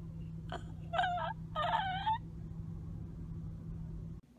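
A woman making two short, wavering, warbly noises with her voice, about a second in and again half a second later, over the steady low hum of a car cabin.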